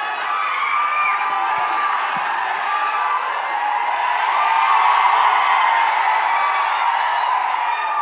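Large audience cheering and whooping, many voices at once, swelling a little about halfway through.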